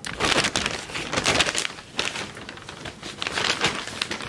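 Paper takeout bag rustling and crinkling as it is handled and opened. The sound comes in several bursts with short lulls between them.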